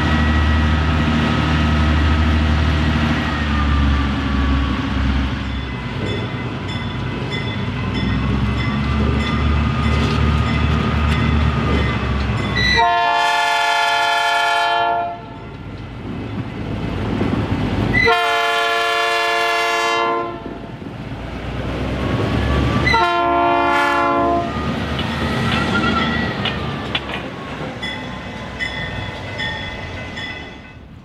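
A passing train sounding its horn: two long blasts and a short one. Underneath is the rhythmic clatter of wheels over the rails and a high whine that slides down and back up in pitch.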